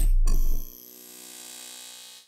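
Logo-intro sound effects: a deep booming hit dies away in the first half-second, then a second hit rings on with a metallic, chime-like tone that fades out near the end.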